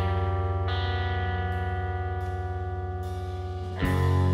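Live indie rock guitar music: distorted, effects-laden electric guitar holding sustained notes over a steady low drone, changing notes less than a second in and slowly fading, then a sudden loud new chord just before the end.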